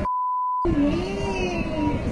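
A steady one-pitch censor bleep lasting about half a second, with everything else muted, blanking out a word. Then a person's drawn-out voice comes in, rising and falling in pitch.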